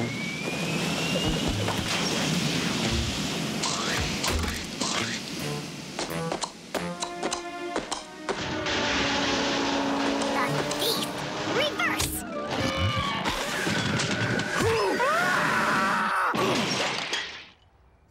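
Cartoon music mixed with comic sound effects, including sharp hits and a shattering crash. It drops off suddenly just before the end.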